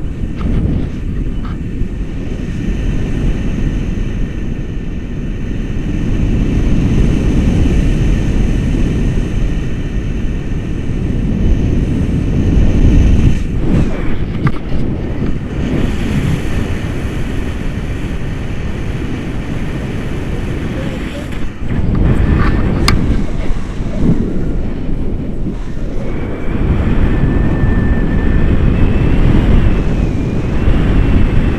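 Wind buffeting the camera's microphone in paraglider flight: a loud, unsteady rush of low noise that swells and eases throughout.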